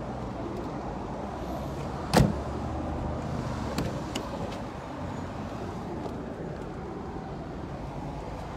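Vehicle engine running steadily with a low rumble, and a single sharp knock about two seconds in.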